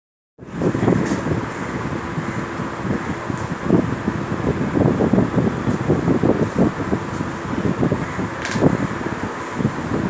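A steady rushing noise with an uneven low rumble, and a few faint clicks.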